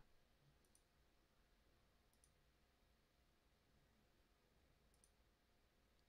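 Near silence: room tone, broken by three faint clicks of a computer mouse, about a second in, a second and a half later, and near the end.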